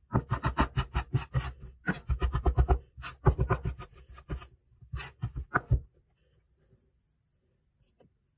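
Metal bench scraper chopping through crumbly pasta dough against a countertop: a rapid run of clicks and taps, about seven a second, in bursts that stop about six seconds in.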